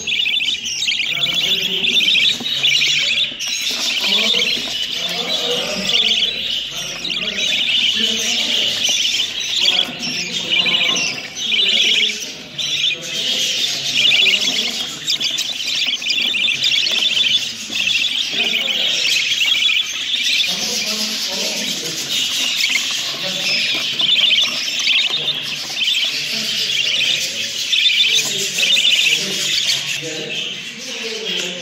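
A nest box full of young budgerigars chattering and chirping without a break: a dense, high-pitched twittering of many birds at once.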